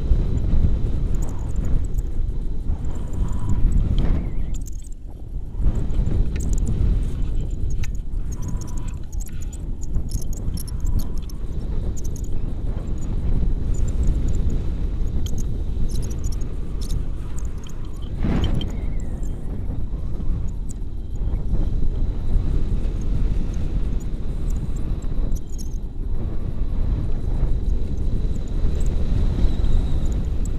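Wind rushing over the camera's microphone in flight under a tandem paraglider: a steady low buffeting rumble that drops away briefly about five seconds in.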